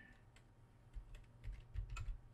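Computer keyboard typing: about half a dozen faint, spaced-out keystrokes.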